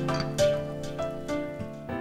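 Background instrumental music: single notes ringing out one after another, a new one every half second or so.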